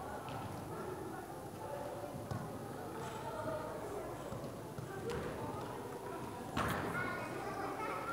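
Indistinct background chatter of voices in a large indoor hall, with one brief sharp knock about six and a half seconds in.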